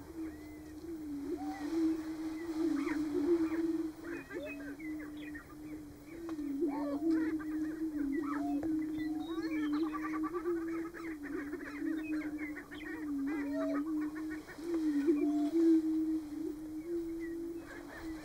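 Greater prairie-chickens booming on a lek: the males' overlapping low, hollow hoots make one steady drone, shifting slightly in pitch. Over it come many short higher calls that rise and fall.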